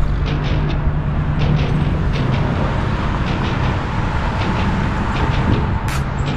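Steady loud rumble of road traffic, with a scatter of light ticks and clicks throughout.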